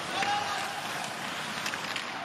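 Ice hockey rink sound during live play: a steady wash of crowd and skating noise, with a couple of sharp clicks from sticks and the puck.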